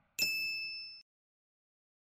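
A single bright, bell-like ding sound effect on a logo reveal, ringing for just under a second and then cut off abruptly.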